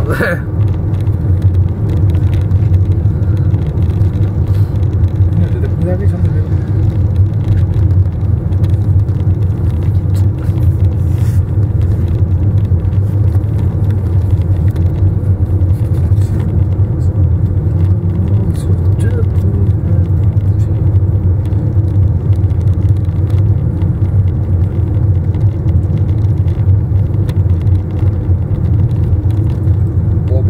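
Car cabin noise while driving: a steady low rumble of engine and tyres on the road.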